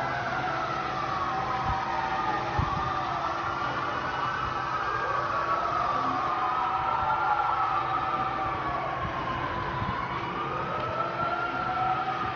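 Several emergency-vehicle sirens wailing at once, each slowly rising and falling in pitch and overlapping one another, over a steady background of city noise.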